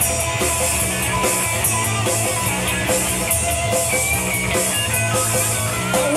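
Garage-recorded blues-rock band playing an instrumental passage: electric guitar over bass and drums with cymbal hits. The guitar line steps upward in pitch over the last couple of seconds.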